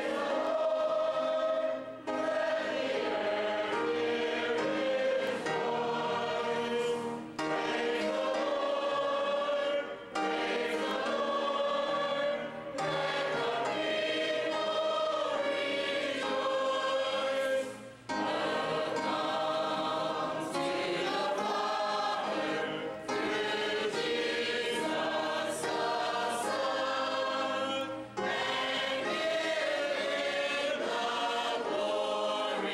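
Mixed choir singing a hymn in long held phrases with brief breaths between them, accompanied by an upright piano.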